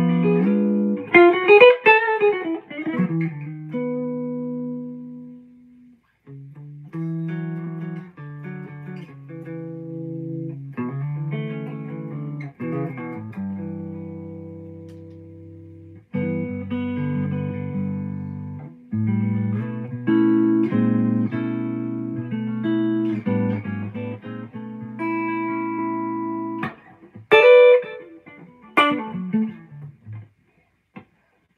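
Gibson Les Paul Standard electric guitar noodling: sustained chords and single-note phrases played freely, stopping for a moment twice along the way.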